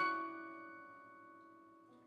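Roland JV-1080 sampled piano patch played from a keyboard: a chord struck loudly at the start rings on and fades away over two seconds. Near the end, softly played notes come in barely audible, too quiet and hard to control under the velocity curve.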